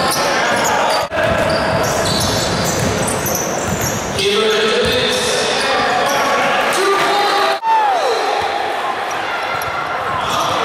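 Basketball game in a sports hall: a ball bouncing on the wooden court, sneakers squeaking and voices shouting, with hall echo. The sound drops out briefly twice, about a second in and again after seven seconds.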